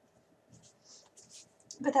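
Several short, soft swishes of loose paper planner pages sliding across a cutting mat as they are pushed together and smoothed flat.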